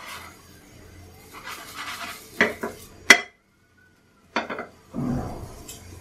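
A spatula knocking and scraping against a non-stick frying pan as a spinach pancake is turned: a few sharp clinks, the loudest just after three seconds, then a short dead gap, another clink and a duller thump near the end.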